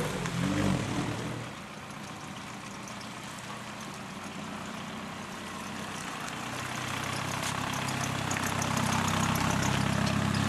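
Volkswagen New Beetle's 1.9-litre diesel engine running under load as it tows a gooseneck flatbed trailer, with tyre noise on wet pavement. It drops back after a second or so, then grows louder from about six seconds in as the car comes near again.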